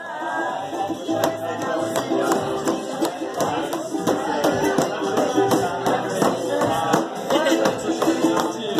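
Ukulele strummed in a quick, steady rhythm, with a voice singing along.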